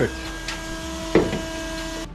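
Small electric washer pump of a radiator water-sprayer running with a steady whine and spray hiss, cutting off near the end. A brief voice sound comes about a second in.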